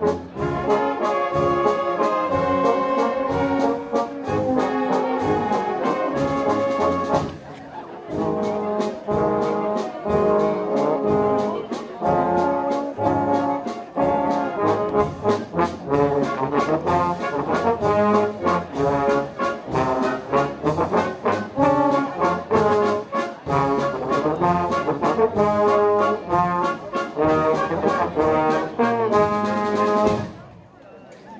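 A brass band plays with a steady drum beat, dropping out briefly about seven seconds in, then comes to an abrupt stop at the end.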